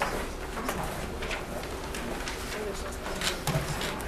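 Classroom room noise: faint, indistinct murmur of voices with scattered clicks, knocks and paper rustling over a steady low hum.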